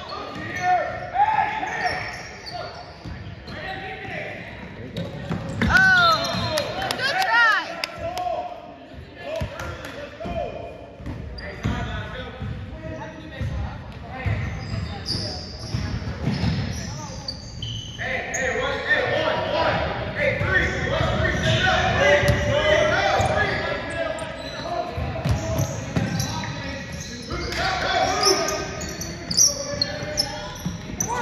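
Basketball being dribbled and bounced on a hardwood gym floor, a string of knocks throughout, with voices of players and spectators mixed in, densest in the second half.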